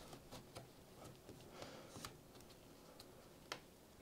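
Near silence with a few faint clicks and taps as a 2.5-inch SATA SSD is handled and seated in a laptop's drive bay, with a slightly sharper click near the end.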